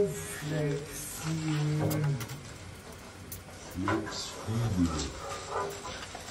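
A man's voice making wordless sounds: held tones that bend in pitch, in short phrases. A few light knocks come in the second half.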